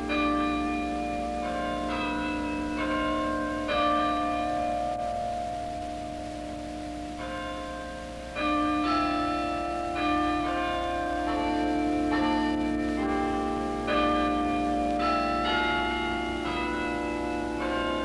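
Tuned tower bells playing a slow melody, each note struck and left ringing into the next, with a longer held pause near the middle.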